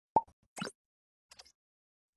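A single short, sharp pop sound effect just after the start, followed by a softer swish about half a second later and a few faint ticks, from an animated logo intro.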